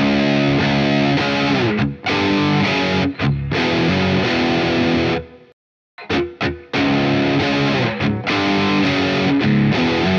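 Distorted Gibson 335 semi-hollow electric guitar in drop C sharp tuning playing a heavy two-part riff, played through twice. The riff breaks off just past halfway, and the second pass opens with a few short muted stabs.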